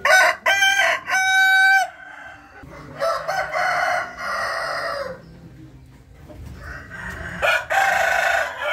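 Rooster crowing: a loud crow in the first two seconds that breaks into short notes and ends on a long held note, another long crow from about three to five seconds in, and the start of another near the end.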